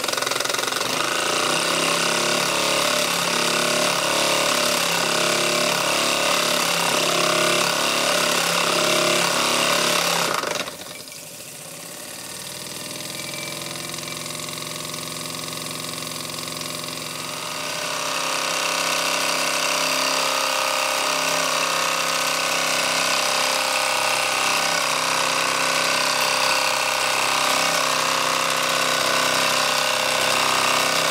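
Mamod SE2 toy steam engine running, its single oscillating cylinder giving a fast steady beat over hissing steam. About ten seconds in it suddenly drops to a quieter run, then picks up speed again with a rising pitch and is back to full running by about eighteen seconds.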